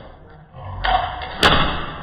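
Scuffling on a bed with one sharp thump about one and a half seconds in.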